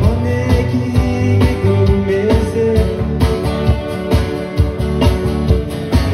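Live band playing: electric and acoustic guitars, bass and drum kit with a steady beat.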